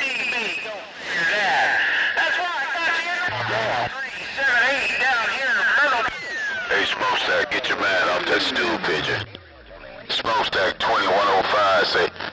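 Distorted, overlapping voices on a 27 MHz CB sideband receiver, warbling and unintelligible through band noise. About halfway through, a single tone slides steadily down from high to very low. The signal then drops out briefly before the voices come back.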